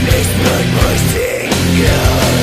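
Melodic black metal recording with guitars and drums playing steadily and loudly. The low end drops out for a moment just past one second in, then the full band comes back in.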